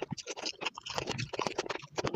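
Close-miked chewing of a bite of strawberry: a dense run of wet, crackly mouth clicks and squelches.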